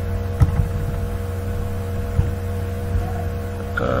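Steady electrical hum of the recording setup, with a few soft computer-keyboard clicks as a comment is typed.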